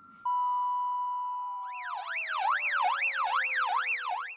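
Police siren sound effect: a steady electronic tone sets in about a quarter second in, and from about halfway it turns into a fast up-and-down yelping wail, rising and falling about two and a half times a second.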